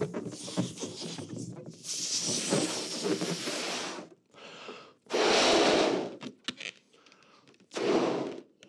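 A man blowing hard into a balloon to inflate it close to bursting. There are forceful, breathy puffs of air with short pauses to breathe in: a long blow over the first few seconds, a short loud one about five seconds in, and another starting at the very end.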